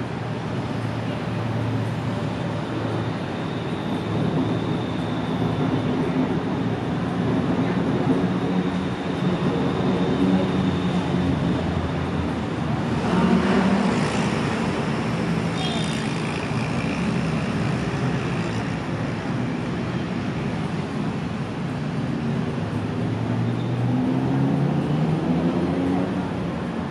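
Busy city road traffic: a steady mix of passing vehicle engines and tyre noise. About halfway through there is a short burst of hiss and a brief high squeal, and near the end an engine rises in pitch as a vehicle pulls away.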